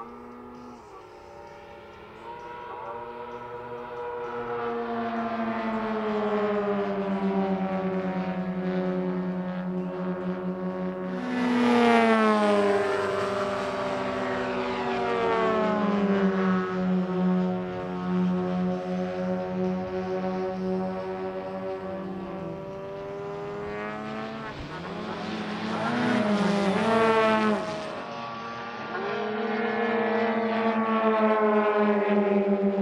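Several radio-controlled model aircraft flying past together, their engines running as a chord of steady tones. The sound swells and the pitch drops sharply as the formation passes close, loudest about twelve seconds in and again around twenty-seven seconds in.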